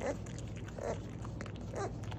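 A baby beaver giving short, wavering, whiny calls about once a second, three in all, while gnawing a piece of food held in its forepaws, with faint chewing clicks between the calls. These are the eating noises that the uploader hears as angry.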